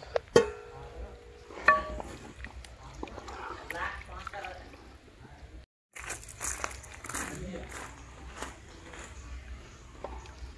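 Two sharp metallic clinks with a short ringing tone in the first two seconds, then a wooden spatula stirring thick sambar in a large metal cooking pot, with soft scraping and knocks against the pot. The sound cuts out for a moment about six seconds in.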